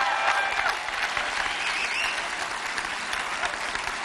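Large keynote audience applauding, with a few whistles in the first second and again around two seconds in, the applause easing slightly in the second half.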